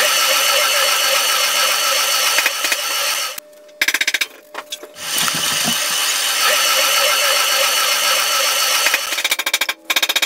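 Compressed air hissing from a hand-held air nozzle in two long blasts, with a stutter of short bursts between them about four seconds in and a rapid fluttering near the end.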